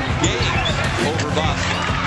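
Basketball game sounds in an arena: steady crowd noise with several short squeaks of sneakers on the hardwood court as players scramble under the basket.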